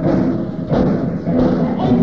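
Punk rock band playing live, with hard drum hits standing out over the rest of the band and a voice.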